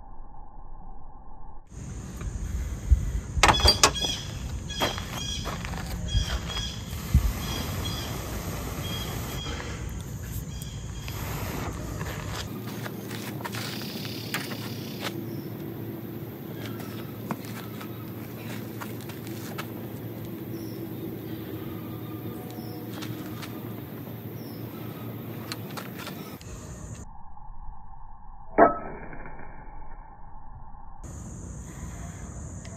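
A carbon steel made from a file striking a chert flake for flint-and-steel sparks: a handful of sharp scraping strikes in the first several seconds and another near the end, over a steady outdoor background.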